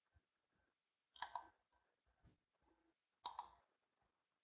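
Two faint double clicks of a computer mouse, about two seconds apart.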